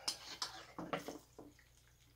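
Handling noise at a chainsaw's fuel tank: a few short, light knocks and clicks of a plastic bottle and the tank opening in the first second and a half.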